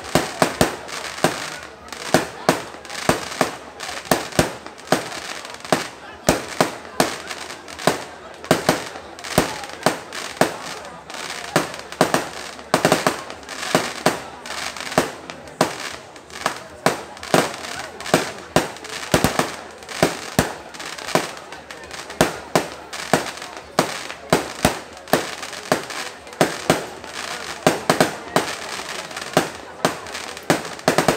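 Aerial fireworks bursting: a rapid, unbroken run of sharp bangs, about two or three a second, over a steady crackle from the bursting shells.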